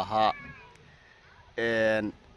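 A man's voice: a word trails off, there is a short pause, and then comes a drawn-out hesitation vowel held at one steady pitch near the end.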